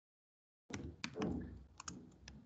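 Typing on a computer keyboard: a quick run of key clicks with a duller thud among them, starting about two-thirds of a second in.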